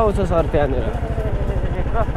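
Motorcycle engine running at a steady cruise while riding, its exhaust beat a fast, even low pulsing.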